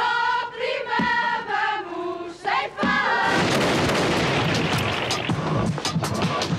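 A group of women singing together in unison, loud and held note by note. About three seconds in, the voices give way to a dense, noisy wash full of sharp hits.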